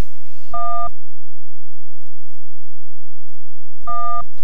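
Two short electronic beeps about three seconds apart, each a steady chord of several tones, with faint tape hiss between them.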